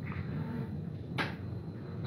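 Quiet handling noise with one sharp click a little past a second in, as a steel Remington 700 rifle bolt is handled.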